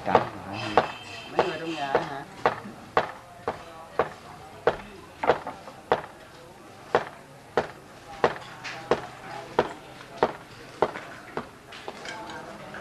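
Steady hammering on the building work: sharp blows, evenly spaced at a little under two a second, with faint voices talking behind.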